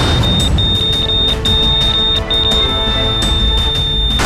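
A bedside patient monitor's high electronic alarm tone, broken into uneven beeps and then held as one steady tone near the end, over dramatic background music. It is the alarm of a hospital patient whose condition is failing.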